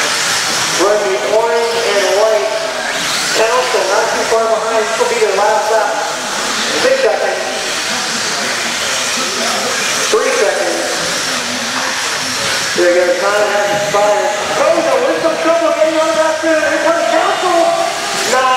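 A race announcer talking over a PA, over a steady high hiss from electric RC buggies with 17.5-turn brushless motors running on a dirt track.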